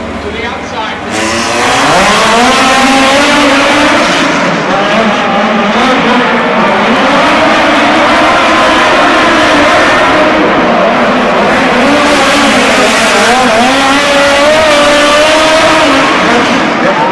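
Two midget race cars' four-cylinder engines at full throttle on a dirt oval. The engine note rises sharply about a second and a half in as the cars accelerate, then rises and falls as they go through the turns.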